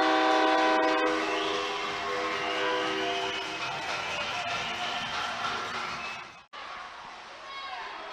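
Arena goal horn sounding a steady multi-tone chord over crowd noise, marking a goal just scored. The horn stops about three and a half seconds in while the crowd noise carries on, then the sound cuts off abruptly near the end.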